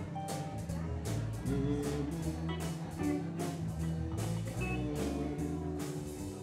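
Live band playing an instrumental passage: electric guitars over a bass line, with drums keeping a steady beat of about two hits a second.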